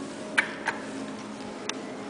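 Sharp clicks from an Otis elevator hall call button being pressed: two close together near the start and a third about a second later, over a steady low hum.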